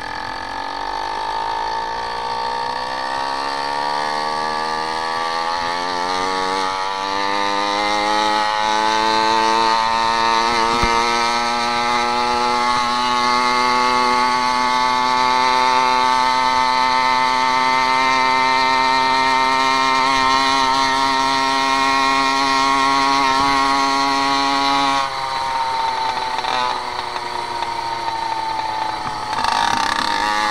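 Small engine of a motorized bicycle under way, its pitch climbing steadily for about ten seconds as it gathers speed, then holding a steady note. About 25 s in it eases off, then climbs again near the end.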